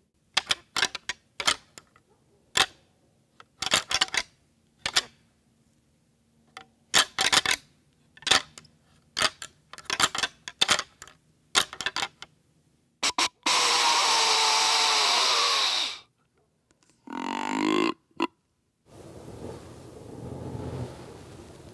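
A pair of whitetail deer antlers being rattled together: irregular clusters of sharp clacks and ticks for about twelve seconds, imitating two bucks sparring during the rut. Then comes a loud hiss lasting about two and a half seconds, and after it a short rising grunt-like call.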